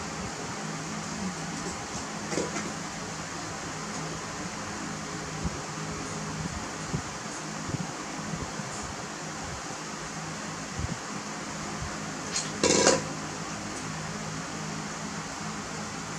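Steady machine hum and hiss, like an electric fan running, with a few faint clicks and one brief, loud knock about thirteen seconds in.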